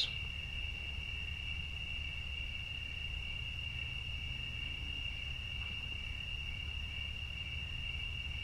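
Crickets trilling steadily at one high pitch, over a low background rumble.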